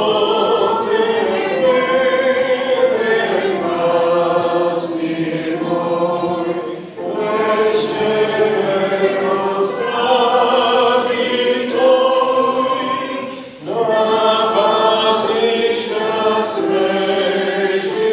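A congregation singing a hymn together in sustained phrases, with brief breaths between lines about seven seconds in and again near fourteen seconds.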